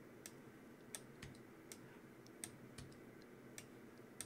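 About seven faint, irregular clicks of a computer keyboard and mouse: the left-bracket key being tapped to make the brush smaller between drawn strokes.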